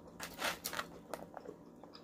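Close-up chewing and mouth sounds of a person eating lo mein noodles: a string of short smacks and clicks.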